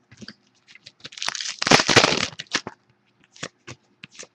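Foil trading-card pack being torn open and crinkled: a dense rustle starting about a second in and lasting over a second. Short light clicks of cards being handled come before and after it.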